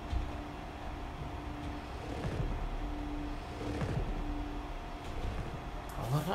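Film-trailer soundtrack: a low rumbling drone under a steady high hum, with a mid-pitched note held and repeated four times.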